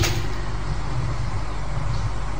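A pause in a man's amplified speech, leaving a steady background hiss with a low hum.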